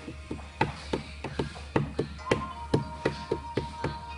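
A quick, uneven series of light taps or chops, about fifteen strikes at three to four a second.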